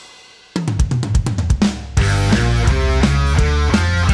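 Rock band recording: after a brief fading tail, an acoustic drum kit plays a fill of quick hits starting about half a second in, then the full band (drums, electric bass and electric guitar) comes crashing back in at about two seconds.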